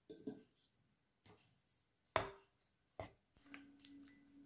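A few soft clicks and knocks of dishes being handled on a table, the sharpest about two seconds in, with a faint low steady tone near the end.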